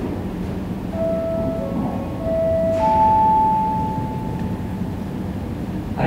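Airport public-address chime: a short run of four bell-like notes, the last one highest, loudest and longest, fading out, the signal that an announcement is about to start. A steady low hum of the terminal runs underneath.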